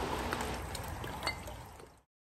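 Liquid splashing and dripping in a plastic bucket as a gloved hand works in it and bottles are emptied back into it, with a few small splashes, fading out near the end.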